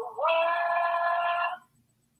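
A female voice singing one long, steady note in an intro jingle. It slides up into pitch at the start and stops about a second and a half in.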